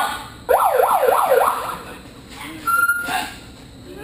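Siren-like whooping: about five quick rising-and-falling pitch sweeps in a row lasting about a second, followed near the end by a short steady whistle-like tone.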